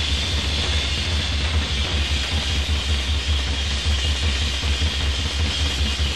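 Hard rock band playing an instrumental stretch without vocals: a loud, dense, unbroken wash of electric guitar over heavy bass.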